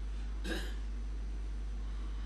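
A single brief vocal sound from a man, like a short breath or syllable, about half a second in, over a steady low electrical hum.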